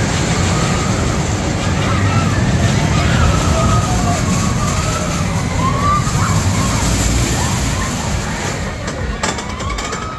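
Steel roller coaster train running along its track with a steady rumble, and riders' screams wavering above it. It fades somewhat near the end.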